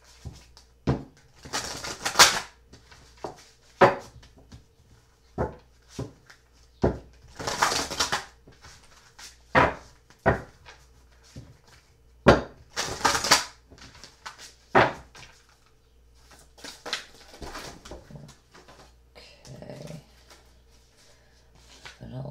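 A deck of oracle cards being shuffled by hand: short rushing riffles of cards, about four of them, among sharp slaps and taps of the cards.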